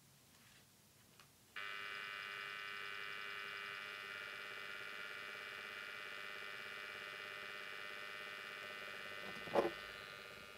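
An Ocean Wave galaxy star projector switches on about a second and a half in and runs with a steady, many-toned buzzing whine. It is one of the two noisiest units in the test. A sharp knock comes near the end.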